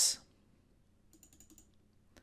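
A few faint, short clicks about a second in, in a pause that is otherwise near silence.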